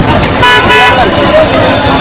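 A vehicle horn toots once, briefly, about half a second in, over street traffic noise and a babble of voices.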